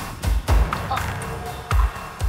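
Tense film score built on deep bass thumps that fall in a repeating pattern: a quick pair early on, then a single hit near the end, with sharp clicks over a low music bed.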